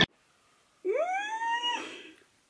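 A cat meowing once: a single call that rises in pitch, then holds for about a second before fading.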